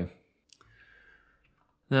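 A single short click about half a second in, followed by a faint breath.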